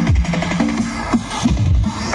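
Electronic dance music played loud through a DJ truck's speaker stack, its beat made of deep bass notes that slide downward in pitch.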